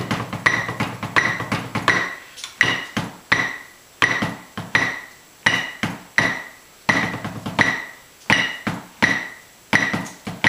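Tenor drum mallets striking a practice surface in a quick patterned rhythm, several strokes to each beat, with heavier, fuller strokes in the first two seconds. Under them a Boss electronic metronome beeps about 84 times a minute, with a higher accent beep every four beats.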